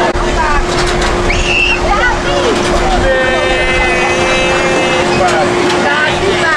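Fairground din at a children's ride: crowd voices over a steady machine hum, with one long held note lasting about two seconds in the middle.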